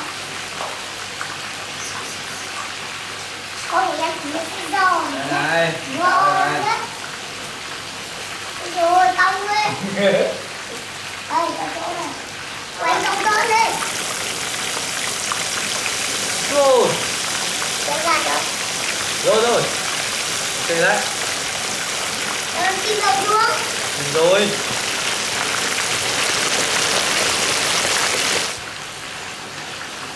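Fish deep-frying in a wok of hot oil: a steady sizzle that grows louder from about halfway in and drops back near the end, with voices calling out over it.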